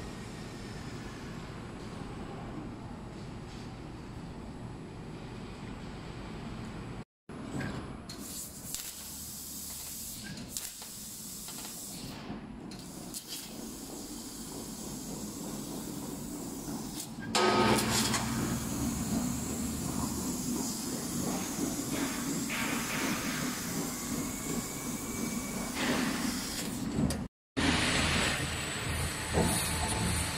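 Fiber laser cutting machine (3 kW) cutting 8 mm carbon steel: a steady hiss of the assist-gas jet at the cutting head, stepping up in loudness about halfway through. Two brief dropouts break it, and near the end comes the mechanical running of the machine's exchange table.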